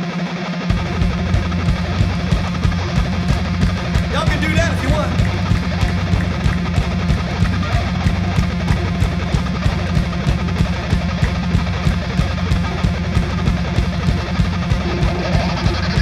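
Live funk band playing: electric guitar alone at first, then bass and drums come in just under a second in with a steady driving beat, keyboards in the mix. A short voice rises over the band about four seconds in.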